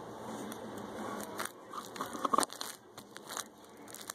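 Sticky beaded slime being squeezed and pulled by hand, giving a run of sharp crackling clicks and pops that start about a second and a half in.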